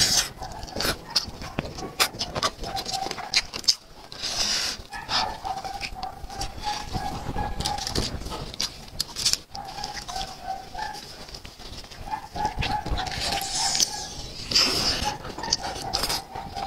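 Close-miked wet chewing, lip smacking and sucking as spiced roast chicken is torn apart and the meat pulled off the bone, in a dense run of irregular clicks and squelches. A faint wavering tone comes and goes several times from about a third of the way in.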